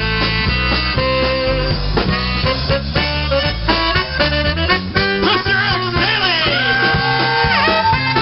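Live polka band playing an instrumental break: button-box accordion over bass guitar and drums, in a steady rhythm. About halfway the low bass notes thin out and long held notes with slides, from the saxophone, come forward.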